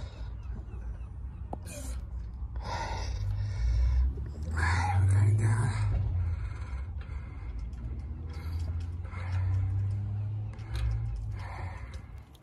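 A man breathing hard and gasping with effort in several heavy breaths while lowering and positioning a heavy engine by hand, over a steady low rumble.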